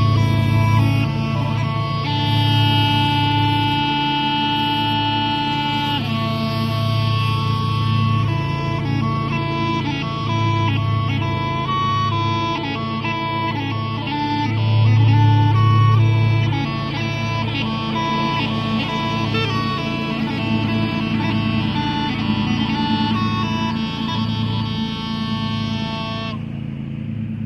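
Scottish smallpipes playing a tune: steady drones under a chanter melody with quick note changes, cutting off suddenly at the end.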